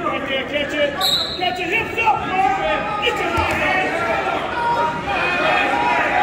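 Several people talking and calling out in a large gymnasium, the voices overlapping and echoing. There is a low thud about three and a half seconds in.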